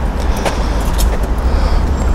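Outdoor street ambience: a steady low rumble of road traffic, with a couple of short faint clicks about half a second and a second in.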